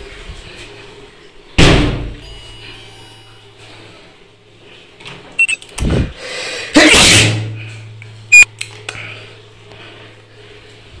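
A door bangs shut hard about a second and a half in, followed by a thud, sharp clicks and a loud clatter of a door around seven seconds in. A steady low hum then sets in and carries on.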